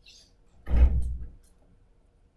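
A single loud thump about a second in, dying away over half a second.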